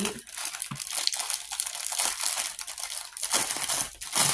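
Clear plastic bag crinkling steadily as it is handled and pulled open by hand.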